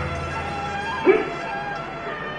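Background music with sustained tones. About a second in comes a single short, sharp shout from the performer, a forceful voiced exhalation of the kind used in the Hung Gar Iron Wire form.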